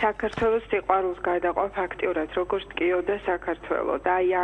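Speech only: a person talking without pause.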